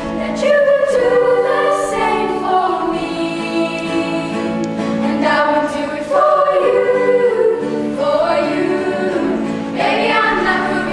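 A primary-school vocal group of young voices singing together in harmony, moving from note to note without a break.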